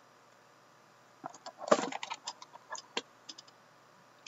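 A small cardboard trading-card box handled and opened by hand: a run of sharp clicks and short scrapes begins about a second in, the loudest near the middle.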